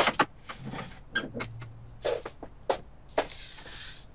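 Scattered light clicks and knocks of tableware and a dining chair as someone sits down at a laid breakfast table, with a brief low hum in the middle.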